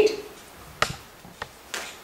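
Three soft, short taps as hands pick up and handle a thin, freshly rolled sheet of flour dough.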